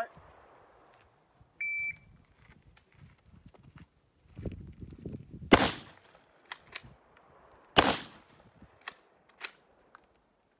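A shot timer beeps once, about two seconds in. Then a Troy PAR pump-action rifle in .308 Win fires two loud shots a little over two seconds apart, each with a ringing tail. Lighter sharp clicks and knocks fall between and after the shots.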